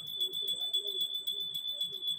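Puja hand bell rung rapidly and without a break: a steady high ring with fast, even clapper strikes, over low voices.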